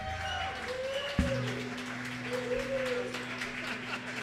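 Light applause from a small audience just after the band's last chord. A single low instrument note starts with a thump about a second in and holds steady under the clapping.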